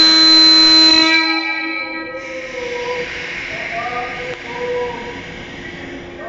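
JR 185 series electric train sounding its loud horn in one long, steady, many-toned blast as a departure warning; it stops about a second and a half in. A steady hiss follows.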